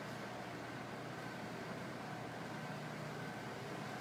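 Steady background hiss with no distinct sound events: the room or recording noise of a pause in speech.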